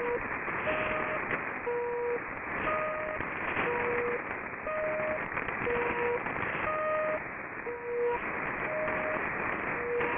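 HAARP transmitter signal received on shortwave AM tuners at 2.8 and 3.3 MHz: short tones about once a second, each about half a second long, alternating between a lower and a slightly higher pitch, over a steady bed of radio static hiss.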